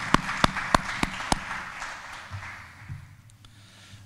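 Applause from a small audience, with one person's loud close claps about three a second standing out over it for the first second and a half; the applause then fades out by about three seconds in.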